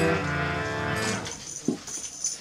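Harmonium's final held chord sounding steadily, then dying away about a second in as the kirtan ends, with a single light knock shortly after.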